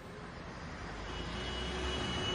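Outdoor city background noise: a steady rumble, like distant traffic, that swells gently over the two seconds.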